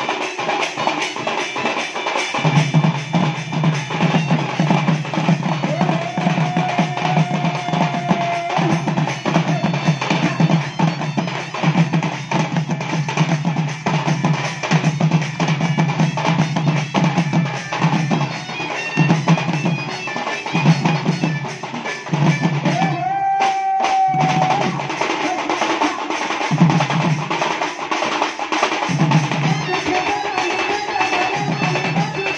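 Western Odisha folk band: barrel drums (dhol) beating a fast, steady rhythm under a muhuri (folk shawm) melody, with two long held reed notes.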